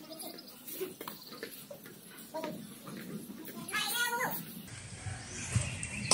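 Quiet outdoor ambience with faint distant voices, and a brief pitched call about four seconds in.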